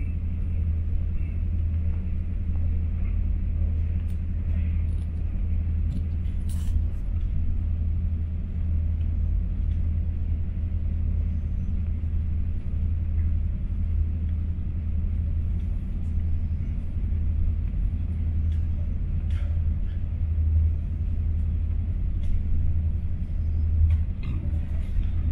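Passenger train running at speed, heard from inside the carriage: a steady low rumble with a few faint clicks.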